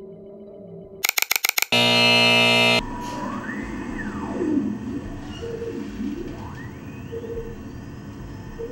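Electronic sound design: a rapid stutter of loud glitch pulses about a second in, then about a second of loud, harsh buzzing. It gives way to synthesized tones sliding up and down in pitch, with a few short soft beeps.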